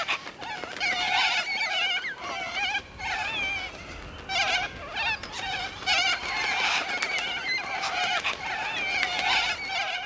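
A dense wildlife chorus, a cacophony of many animals calling at once: overlapping chirping, warbling calls that ease off briefly about three seconds in.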